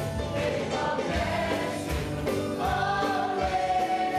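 A congregation singing a hymn together, with a man's voice leading through a microphone, over an electronic keyboard accompaniment with a steady beat.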